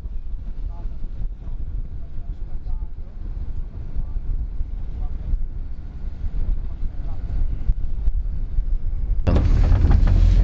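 Road and engine rumble heard inside a moving van's cabin: a steady low drone that grows louder near the end.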